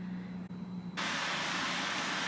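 A faint steady hum, then about a second in a steady, even hiss starts abruptly and carries on.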